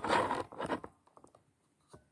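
A scratchy rustle of paper as a book is handled, lasting about a second, then a few faint clicks.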